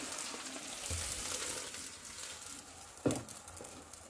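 Shallots and curry leaves frying in oil in a clay pot: a soft, steady sizzle, with one brief louder burst about three seconds in.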